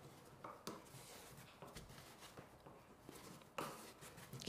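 Near silence with faint rustles and a few light brushing ticks from a calico strip being wrapped tightly around a wooden embroidery ring frame. The last of these, near the end, is a little louder.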